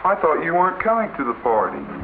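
A sampled voice speaking in a thin, radio-like tone with no high end, starting abruptly after a brief silence, over a steady low hum.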